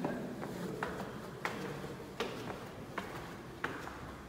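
Footsteps on a tiled stone floor, an even walking pace of about six steps in four seconds.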